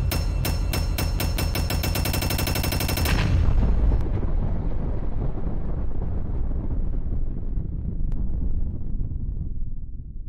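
Outro sound effect: sharp shots speed up into a rapid machine-gun-like rattle. About three seconds in it breaks off into a loud explosion, whose low rumble slowly dies away.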